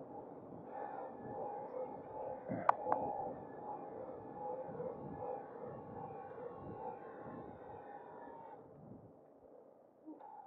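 An electric bike's motor whining steadily while riding, with the tone fading out as the bike slows to a stop near the end. A single sharp click comes just under a third of the way in.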